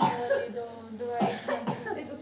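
A person coughing about three times in short bursts, over voices.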